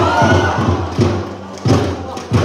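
Football crowd cheering in the stands, with a shout near the start, over a steady run of thumps about three a second from inflatable thunder sticks being banged together.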